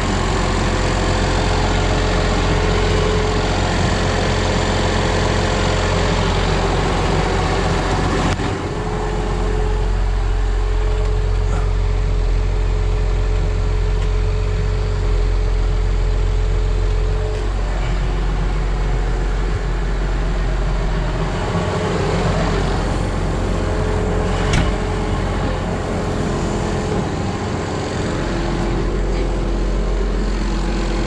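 Tractor engine idling steadily, with a steady whine over it.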